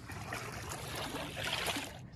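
Floodwater swishing and sloshing as a person wades through it, a steady noisy wash that swells slightly past the middle.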